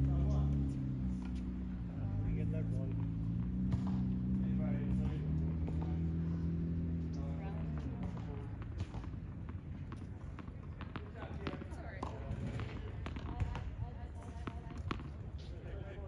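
A low steady drone that changes pitch in steps fades out about eight seconds in; after that, tennis balls bounce and are struck on the hard court as scattered sharp knocks.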